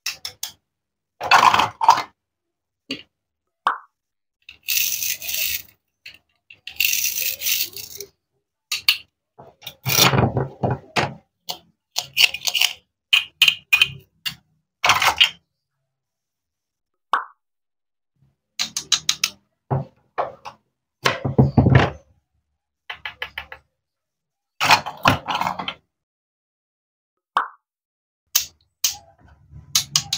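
Plastic and wooden toy fruit pieces being cut with a wooden toy knife, pulled apart and handled on a wooden cutting board: a string of short clacks, knocks and rattles, with a few longer scraping stretches and silent gaps between them.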